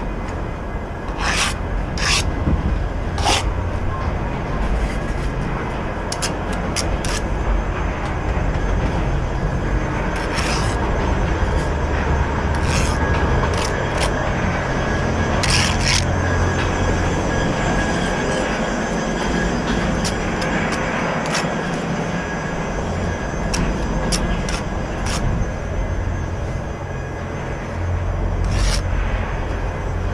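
Bricklaying at work: a steel trowel scraping and spreading mortar, with sharp knocks and taps as bricks are set down and tapped into line, over a constant low rumble.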